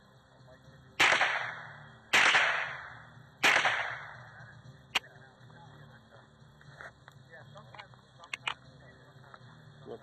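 Three shots from a Ruger 10/22 semi-automatic rifle, a little over a second apart, each ringing out and dying away over about a second. A single sharp click about five seconds in and a few lighter clicks near the end.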